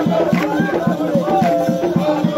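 Drum-and-rattle percussion music playing a fast, steady beat of about five strokes a second, with voices over it.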